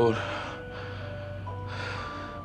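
Soft background score of long held notes, with the end of a man's words at the very start and an audible breath drawn in near the end.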